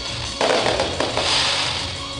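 A fireworks display with music playing: a sharp bang about half a second in and another near the one-second mark, then a hiss of crackle, over music with a beat.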